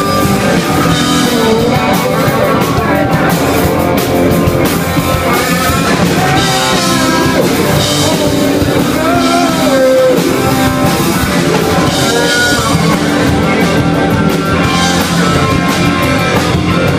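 Rock band playing live and loud: electric guitars over a drum kit, with a lead line bending up and down in pitch in the middle.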